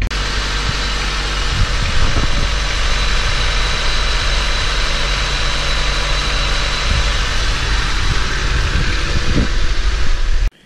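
Honda engine idling steadily, heard up close in the engine bay, with the replaced alternator charging the battery at a healthy 14.2 volts.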